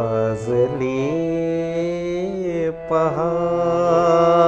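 A man singing an Indian semi-classical style song with long held notes and gliding ornaments, over a harmonium sustaining steady notes beneath. The voice breaks off briefly a little before three seconds in, then picks up again.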